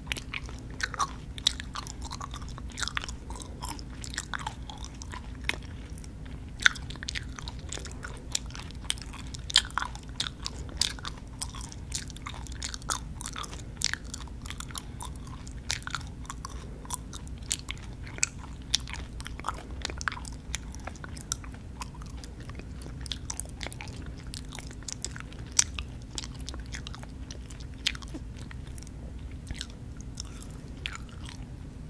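Close-miked chewing of sour gummy worms: sticky, wet mouth clicks and smacks, irregular and several a second, over a steady low hum.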